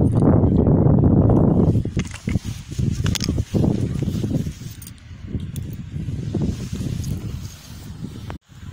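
Metal leash clips clicking and grass rustling as small dogs are unclipped from their leads at close range, after a loud low rumble on the microphone for about the first two seconds.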